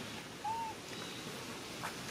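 Baby macaque giving one short, clear coo call, rising then falling slightly in pitch, about half a second in, over a faint steady outdoor hiss.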